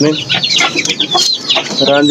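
Aseel chickens clucking, over a dense run of quick, high, falling peeps from chicks.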